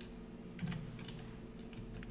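A few faint computer keyboard keystrokes about half a second to a second in, over a steady low electrical hum.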